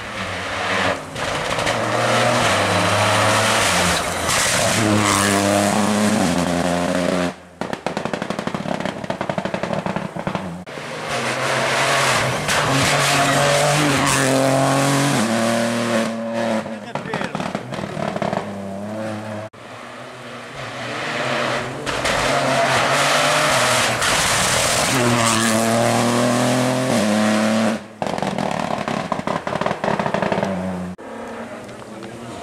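Rally cars at full throttle on a tarmac stage, one after another. Each engine climbs in pitch through the gears and drops at every upshift as the car rushes past. There are three loud passes, and the sound cuts off abruptly between them.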